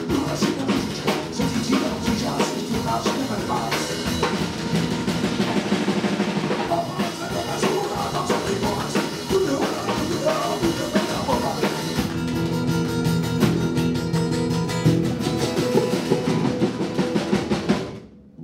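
Live band music with a drum kit prominent, bass drum and snare playing under the band, and sustained pitched notes coming in over the last third.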